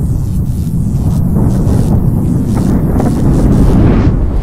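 Cinematic intro sound effect: a loud, deep rumble that swells steadily, with light crackles over it, building toward a burst.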